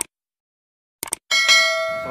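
Subscribe-button animation sound effects: a mouse click at the start and a quick double click about a second in, then a notification-bell ding whose many tones ring on and fade slowly.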